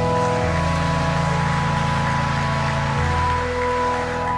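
Organ music: sustained organ chords held steadily, the chord changing about half a second in and again about three seconds in.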